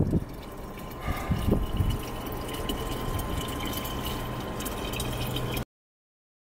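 Drinking-water vending machine running, water pouring into a large plastic bottle with the machine's pump humming steadily, after a few knocks between one and two seconds in. The sound cuts off abruptly shortly before the end.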